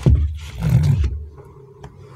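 Rubber squishy toys being handled on a tabletop: a sharp knock at the start as one is picked up, then a low rubbery rumble of the toy rubbing and being gripped, fading away in the second half.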